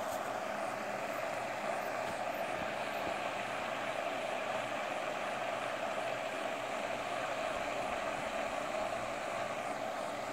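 Steady, unbroken rushing of floating pond fountain aerators spraying water.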